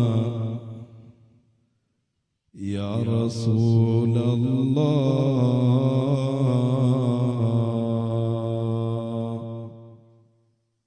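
A man chanting devotional Arabic verse in long, held melodic notes with a slight waver. His first phrase fades out about a second in. After a short silence he starts a new phrase and holds it until it fades near the end.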